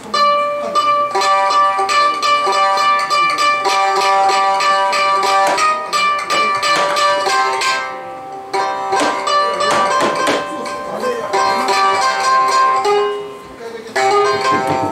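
A ミンミン (minmin), a small plucked string instrument, plays a melody of rapidly picked notes, with short breaks about eight seconds in and just before the end.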